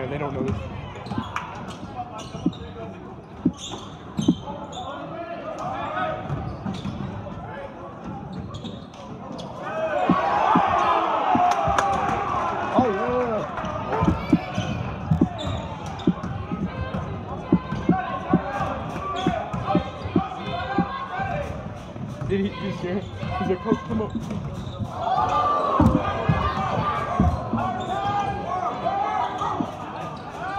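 A basketball dribbled on a hardwood gym floor, with repeated sharp bounces, over the voices and shouts of spectators and players in the gymnasium. The voices swell louder about ten seconds in and again near the end.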